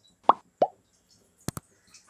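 Two short bubbly "plop" pops in quick succession, then a double click about a second later: the pop-and-click sound effects of an on-screen subscribe-button animation.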